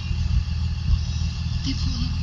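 A vehicle's engine idling, heard from inside the stopped vehicle as a steady low rumble.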